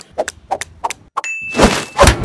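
A quick string of short clicks and knocks, then a single clear, high-pitched ding held for under a second near the end.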